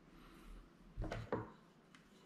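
Two short knocks, about a third of a second apart, of small objects being handled on a wooden tabletop.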